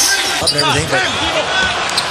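A basketball being dribbled on a hardwood court, a few short bounces heard under the live game commentary.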